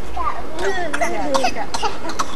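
A young child's babbling vocal sounds, wavering up and down in pitch, with a short cough among them.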